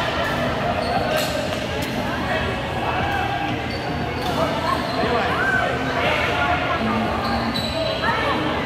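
Badminton rackets striking a shuttlecock a few times, sharp hits that echo in a large hall, with voices calling in the background.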